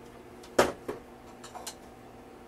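Kitchenware handled while hot water is readied for a hand drip: one sharp knock, a smaller knock just after, then two light clicks.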